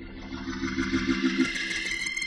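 Electric organ playing a gospel hymn: a low held chord drops out about a second and a half in as high notes swell up into a bright, sustained chord, growing louder.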